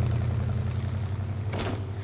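Car engine running with a steady low drone that eases off slightly, and a brief hiss about a second and a half in.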